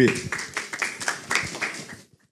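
An audience clapping: a short round of applause that fades out near the end.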